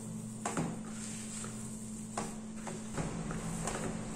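Hands kneading a soft cornmeal dough in a plastic bowl: a few soft pats and knocks of dough and hand against the bowl, over a steady low hum.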